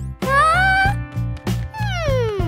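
Children's cartoon background music with a steady beat, over which a high, cat-like whining cry rises in pitch in the first second; near the end a long falling glide starts.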